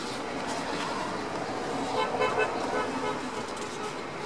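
A vehicle horn toots briefly about halfway through, over a steady background of road traffic noise.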